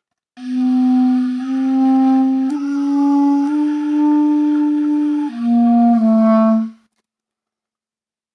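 A solo wooden 1940s Evette Schaeffer clarinet plays a slow phrase of about six held notes in its low register. The notes climb by small steps, then drop, and the phrase breaks off about a second before the end.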